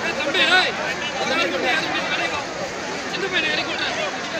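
Several people's voices talking and calling out over one another, some of them high-pitched, over a steady background hiss.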